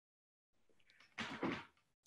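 Dead silence from a video call's noise gate, then, a little over a second in, a faint half-second breathy exhale from a person, just before he speaks.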